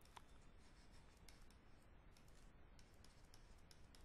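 Very faint ticks and scratches of a stylus writing on a pen tablet, many small clicks in quick succession over near-silent room tone.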